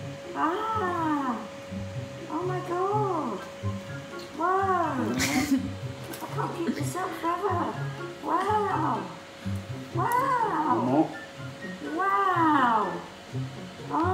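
Electronic Chewbacca mask playing Wookiee roars over and over as the wearer keeps her mouth open: about seven or eight arching growls, each under a second, coming every one to two seconds.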